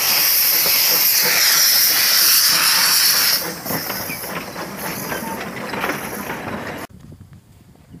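Small narrow-gauge steam locomotive letting off steam: a loud, steady hiss that weakens sharply about three and a half seconds in, carries on more quietly, and cuts off abruptly shortly before the end.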